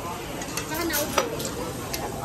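Meat sizzling on a tabletop barbecue grill, with a few light clicks of metal tongs against the grill.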